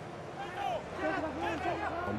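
Indistinct voices, quieter than the commentary, with a low steady hum that comes in about halfway.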